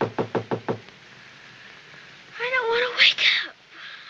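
A quick run of about six sharp knocks in the first second, then a little over two seconds in a child's drawn-out groan as she stirs from sleep.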